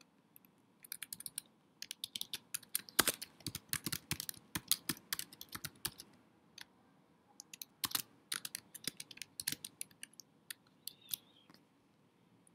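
Typing on a computer keyboard: quick runs of keystrokes, broken by a pause of about a second and a half in the middle.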